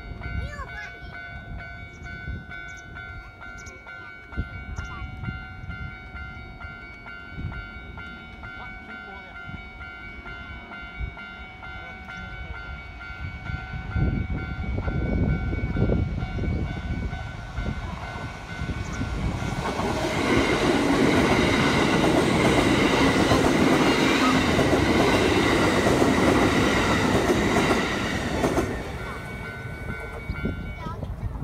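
Japanese level-crossing alarm ringing steadily while a Kintetsu electric train approaches and passes close by. The train noise builds from about halfway, is loudest for about ten seconds, and drops off suddenly near the end.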